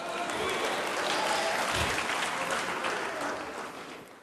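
A church congregation applauding, with a few voices calling out in it; the applause builds over the first second and dies away near the end.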